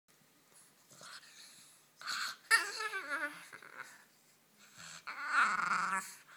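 Puffs of breath blown into a small dog's face, and the dog's whining grumbles in reply: one falling in pitch about two and a half seconds in, and a longer wavering one near the end.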